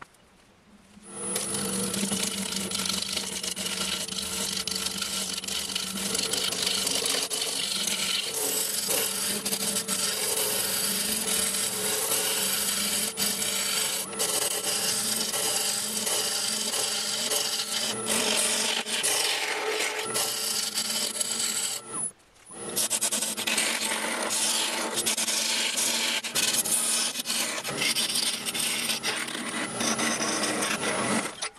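Wood lathe turning a log while a turning tool cuts it, taking it from rough bark down to a smooth cylinder: steady shaving and scraping over the lathe's running hum. It starts about a second in and breaks off briefly about three-quarters through.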